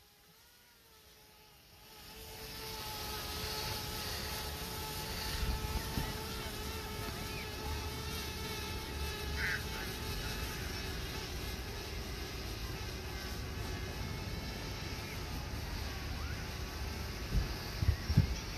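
Quadcopter drone's propellers buzzing steadily as it climbs: a whine with several held, slightly wavering tones that sets in about two seconds in, over a low rumble.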